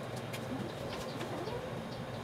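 Bird calls over a steady low hum of background noise, with a few faint short sliding calls and small clicks scattered through.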